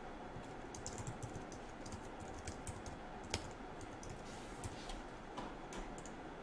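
Computer keyboard typing: a steady run of quick keystrokes, with one sharper key click about halfway through.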